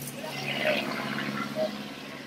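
Thin plastic shopping bag rustling and crinkling as it is handled and opened, loudest in the first second or so.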